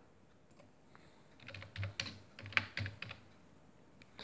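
A short run of faint, irregular light clicks and taps in the middle of an otherwise quiet pause: handling noise from the phone filming the page as it is moved.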